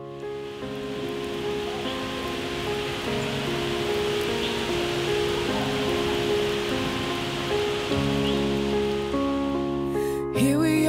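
Steady rain falling, an even hiss that starts suddenly and stops near the end, over soft background music with slow sustained chords.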